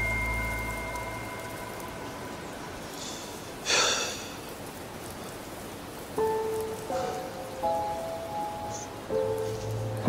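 A phone's notification chime rings out and fades over the first second or so. A brief breathy noise comes about four seconds in, then soft, sparse music notes from about six seconds in.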